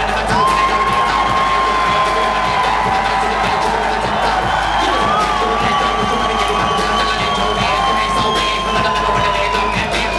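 Hip-hop beat playing loud through a club PA, with the crowd cheering and shouting over it; a long high note is held across most of it, breaking twice.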